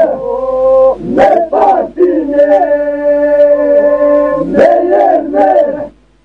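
Men's group singing a Lab Albanian polyphonic song: a steady drone note held under voices that slide between pitches in long, howl-like phrases. It breaks off sharply just before the end as the song finishes.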